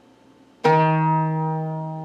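A single note plucked on an oud about half a second in, ringing and slowly dying away. It is the E quarter-flat, the second note of maqam Bayati, pitched as in Arabic music, between the flatter Persian and the sharper Turkish quarter tone.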